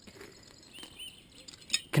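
Light clinking of a steel long-link anchor chain as it is picked up and handled on concrete.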